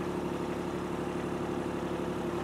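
Kubota B2601 compact tractor's three-cylinder diesel engine running at a steady speed.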